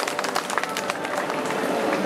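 The last hits on an acoustic drum kit end about a second in, and the crowd takes over with clapping and chatter.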